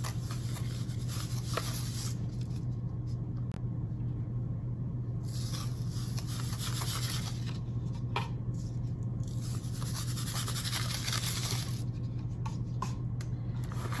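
Dry sand poured from a plastic cup into a plastic tub over gravel, hissing in three long runs, with a few light clicks and the sand scraped as it is spread by hand. A steady low hum sits underneath.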